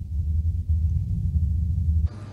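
A steady, deep rumble with nothing above it, cutting off suddenly at the end.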